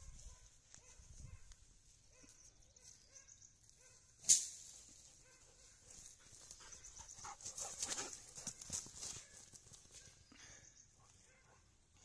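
Young gaddi dog running through grass toward the camera, its footfalls and the rustle of the grass coming as a quick run of soft strikes in the middle stretch. A single sharp click about four seconds in is the loudest sound.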